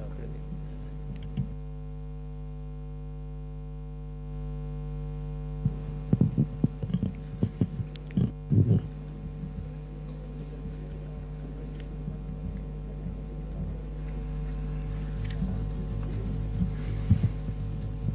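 Steady electrical mains hum on the audio feed, with several overtones. A cluster of short clicks and knocks comes between about six and nine seconds in.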